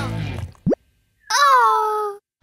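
A quick rising cartoon "bloop" sound effect as the background music drops out, followed after a short pause by a high-pitched cartoon girl's voice giving a falling, dismayed whimper.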